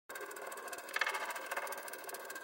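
Faint, fast rattling whirr of an animated logo intro sound effect, swelling briefly about a second in.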